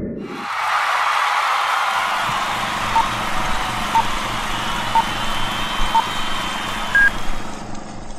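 Old-film countdown leader sound effect: a steady projector hiss with a low rattle, and a short beep once a second from about three seconds in, ending with a single higher beep near the end.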